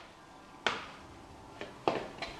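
A spoon knocking against a glass mixing bowl while stirring minced-meat stuffing: three short, sharp clinks, one about a third of the way in and two close together near the end.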